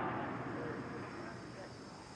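Faint ambient noise from the launch-pad audio feed, with no engine sound yet. It fades down steadily over the two seconds, under a thin, steady high-pitched tone.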